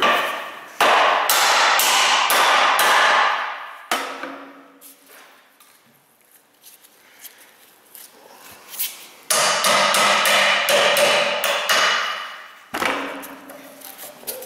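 Hammer blows on a steel punch driving a U-joint bearing cup out through the yoke of a rusty driveshaft. Two runs of rapid ringing metal strikes, each about three seconds long, with a quiet pause of several seconds between them.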